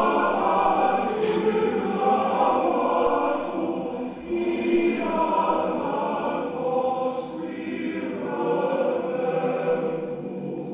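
A choir singing slowly, many voices holding long notes in sustained phrases that ease off briefly about four and seven and a half seconds in.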